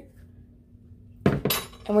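A metal tablespoon clinks twice about a second in, the second clink ringing briefly.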